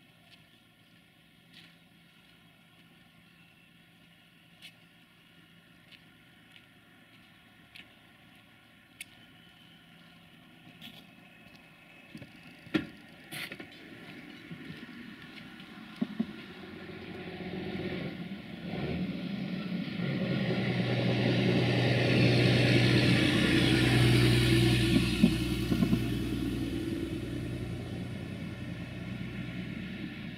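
Road traffic passing: a heavy lorry's engine and tyres come up from quiet about halfway through. The engine hum and road noise are loudest a few seconds before the end, then ease off. Before that there are only scattered small clicks and taps.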